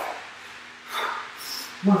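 A man breathing hard from the exertion of repeated burpees: one forceful breath about a second in and a shorter hissing breath half a second later.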